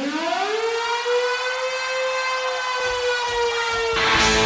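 A siren-like wailing tone that glides up in pitch, then levels off and holds steady, easing down slightly near the end. It is the opening of the next song on a music soundtrack.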